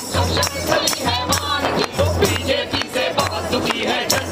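A group of men singing a song together into microphones, with a hand-struck frame drum keeping a steady beat.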